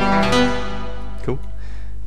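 Notes from a Reaktor 5 software synthesizer in FL Studio playing the last few notes of a short melody, ringing out and fading away about a second in. A steady low hum lies underneath.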